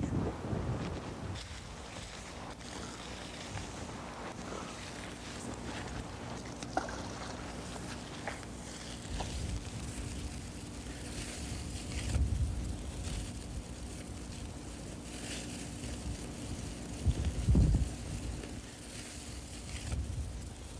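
Outdoor lakeside ambience with wind buffeting the microphone in low gusts, strongest about twelve and seventeen seconds in. Small scattered clicks and rustles run over a faint steady hum.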